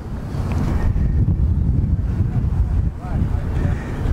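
Wind buffeting the camera microphone outdoors: a loud, uneven low rumble with no engine running.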